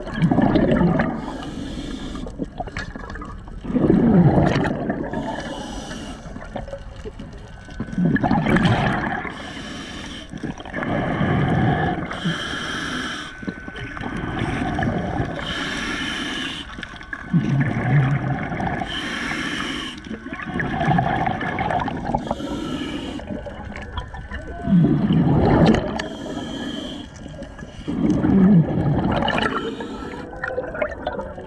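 Scuba diver breathing through a regulator underwater: a hiss on each inhale alternating with a burst of bubbles on each exhale, one breath about every four seconds.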